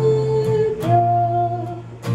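A woman's voice holding long sung notes over strummed acoustic guitar, stepping up to a higher note about a second in.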